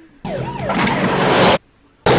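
Police siren wailing over a speeding car's engine and tyre noise in a TV car chase. It starts about a quarter second in, grows louder and cuts off abruptly at about a second and a half.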